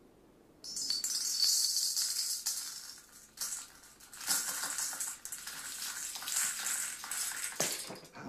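Gold nuggets poured from a copper scoop into the brass pan of a balance scale, rattling and clinking in a dense trickle. It starts about a second in and stops just before the end.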